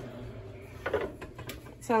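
A quiet kitchen with a few light clicks and knocks of things being handled, and a faint voice in the background; a voice starts speaking near the end.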